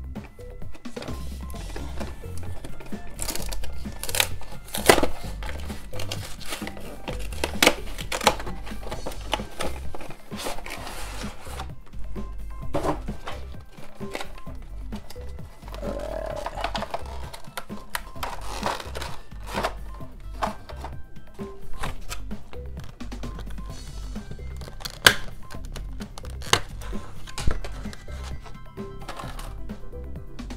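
Background music with a bass line, over repeated crinkling, clicking and snapping of a clear plastic blister tray as a Pokémon trading-card collection box is opened by hand.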